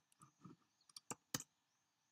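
A few faint, sharp clicks of computer keys, two of them close together a little over a second in, against near silence.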